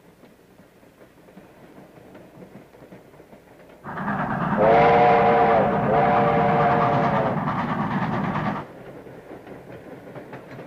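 Train wheels rumbling and clattering on the rails. About four seconds in the train passes loud, sounding two long blasts of a chime whistle playing a chord, the second blast longer. The loud passage cuts off suddenly near the end, back to a quieter rail rumble.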